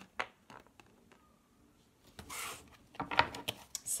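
Tarot cards being handled on a table: a few light clicks at first, a soft rustle about two seconds in, then a quick run of card clicks and taps near the end as the deck is picked up.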